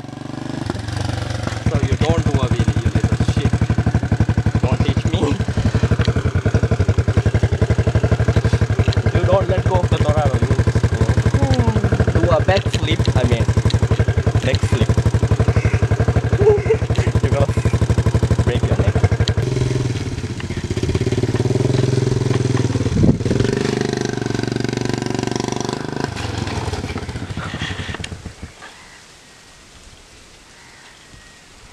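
A motorbike engine running steadily, with voices at times. The sound changes about twenty seconds in and drops away near the end.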